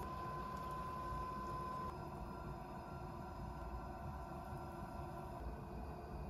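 Electric potter's wheel running with a steady motor whine over a low rumble while wet clay is thrown on it. The whine steps slightly lower and quieter about two seconds in.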